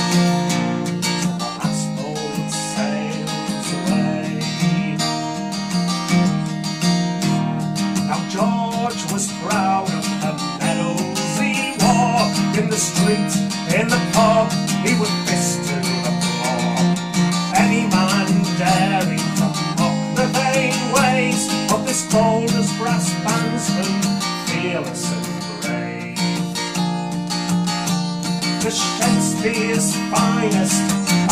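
Acoustic guitar strummed and picked in an instrumental passage of a folk song, with a steady chordal bass under a moving melody.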